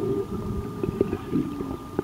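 Muffled underwater noise picked up by a submerged camera: a low, rumbling wash of moving water with scattered short knocks and bubbly blips, and a faint steady high hum underneath.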